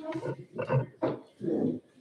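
A muffled, indistinct voice: about four short low vocal sounds in two seconds, with no clear words.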